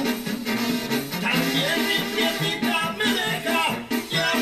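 Mexican banda brass band playing: trumpets, trombones and clarinets over a sousaphone bass line that steps in a steady beat. The music is heard as played through a television.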